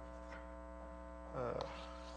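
Steady low electrical mains hum. A man says a brief "uh" about a second and a half in.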